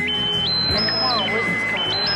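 A piercing electronic tone stepping up in pitch and back down again, about one cycle every second and a half, repeating over a low droning hum. It is the noise of a sabotaged sound system.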